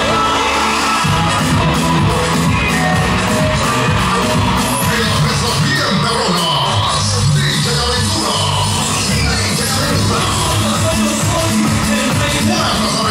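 A live band playing amplified music on keyboards and drum kit, loud and continuous, over a strong low bass line.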